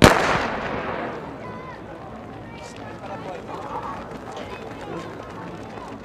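Starting gun fired for a sprint start: one sharp crack that echoes around the stadium for about a second, the signal that sends the runners out of their blocks.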